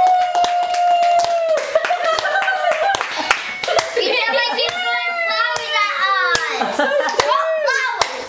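Children's voices singing a song, opening on a long held note and then moving through shorter rising and falling phrases, with hand claps sounding throughout.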